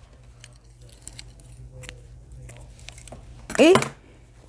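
Faint rustling and small scattered ticks of hands working cotton yarn with a crochet hook, over a steady low hum.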